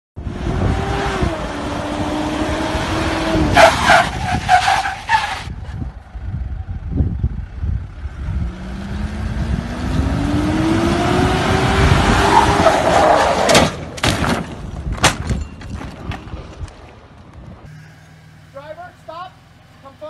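A Mitsubishi Pajero SUV's engine revving under loud rushing noise. Its pitch dips briefly at the start, then climbs steadily over several seconds in the middle. A few sharp knocks follow, and voices talk near the end.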